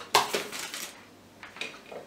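A hot glue gun being picked up and handled on a work surface: a sudden hard clatter just after the start, then a second, lighter clatter near the end.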